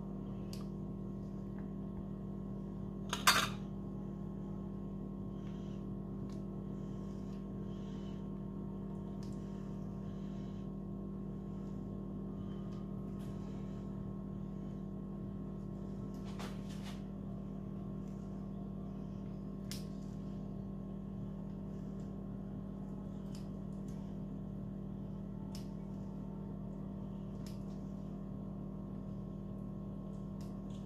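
A steady low mechanical hum runs throughout. Over it come sparse faint taps of a knife blade cutting through rolled puff pastry and meeting the granite counter, with one sharper knock about three seconds in.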